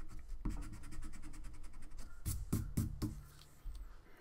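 Pencil eraser rubbing quickly back and forth on drawing paper, rubbing out stray pencil lines. There are a few louder strokes just past the halfway point, and it quietens near the end.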